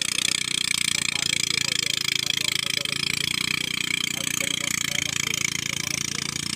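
Engine of a motorised rice thresher running steadily, with a continuous mechanical clatter and hiss.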